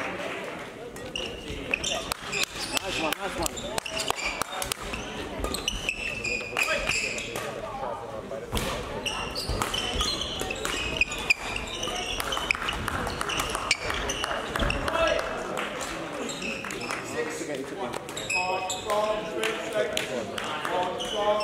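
Badminton rackets striking a shuttlecock in a large sports hall: a string of sharp, irregular hits, with voices in the hall throughout.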